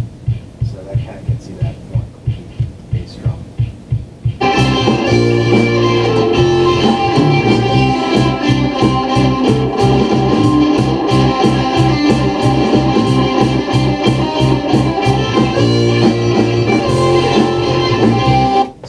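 A soloed kick drum, compressed with a slow attack to make it clickier, played back over studio monitors, beating about four times a second. About four seconds in, the full band mix comes in, with guitars and the rest of the drums over the kick.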